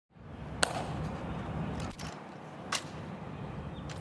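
Steady outdoor background hiss that fades in at the start, with two sharp clicks about two seconds apart, the first under a second in and the second near three seconds in.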